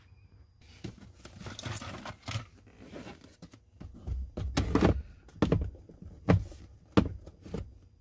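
Plastic glove box bin being handled and fitted back into a 2014 GMC Sierra 1500's dashboard: rubbing and scraping of plastic, then several hollow knocks in the second half as its tabs are pushed into place.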